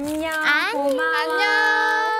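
A woman singing into a microphone, holding long notes with a swoop in pitch about half a second in, with no backing music audible.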